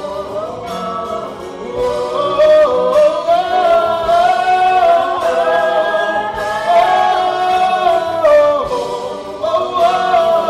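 Musical theatre singing: several voices holding long notes in harmony over band accompaniment, moving between pitches in steps.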